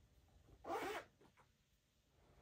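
Zipper on a gray suede boot being pulled open in one quick stroke about half a second in, a short buzzing zip.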